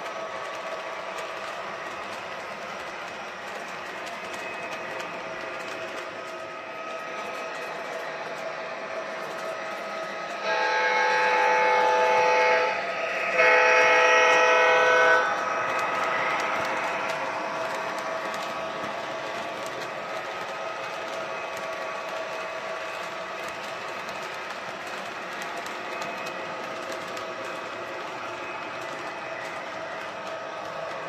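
Model train horn from an MTH O-gauge GE Evolution Hybrid diesel locomotive's onboard sound system: two blasts of about two seconds each, about ten and thirteen seconds in, as the locomotive nears a grade crossing. Under the horn there is the train's steady running sound, with freight cars rolling on the three-rail track.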